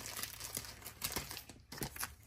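Crinkling and rustling of clear plastic binder sleeves and paper sticker sheets being handled, a little louder about a second in and near the end.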